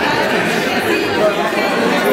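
Several people talking at once: overlapping, indistinct chatter with no single voice standing out.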